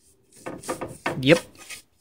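Bristle paint brush scrubbing oil onto rough pallet-wood slats in several short, scratchy strokes, starting about half a second in.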